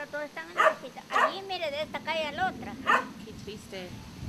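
An elderly woman's voice speaking Spanish in short, wavering phrases, the pitch trembling and rising and falling; it fades out near the end.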